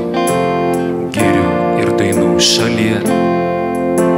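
A live worship song: acoustic guitar strumming sustained chords, with a man singing into a microphone.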